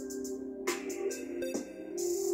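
Instrumental electronic background music with a steady beat and sustained synth tones.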